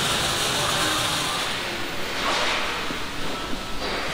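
Steady hiss and hum of factory workshop noise, with no single distinct event.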